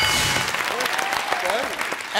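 Studio audience applauding, with the answer-board reveal chime ringing briefly at the start and voices under the clapping.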